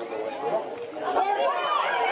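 Football spectators' voices: chatter and a man shouting encouragement, the shouts growing louder about a second in.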